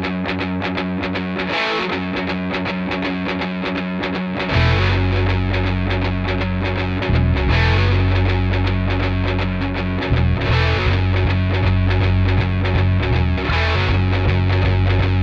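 Instrumental intro of a psychedelic hard rock song: a distorted electric guitar riff with a full band. About four and a half seconds in, a heavy low end comes in and the music gets louder.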